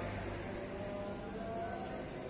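Steady background motor-traffic noise, with faint engine hums that waver slightly in pitch.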